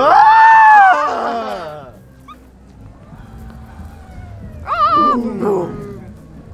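A person voicing the call of a toy brachiosaurus. There are two drawn-out howling calls: a loud one at the start that rises and then falls, lasting nearly two seconds, and a shorter, wavering call that drops in pitch about five seconds in.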